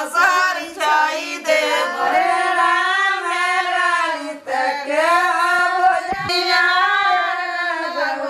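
Women singing a traditional North Indian wedding folk song (geet) unaccompanied, in long, wavering held notes.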